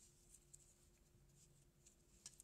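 Near silence: the faint handling noise of crocheting, a metal crochet hook working cotton yarn, with a couple of soft ticks over a faint steady hum.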